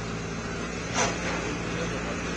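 Steady low hum of a running engine or machinery, with a brief faint voice or knock about a second in.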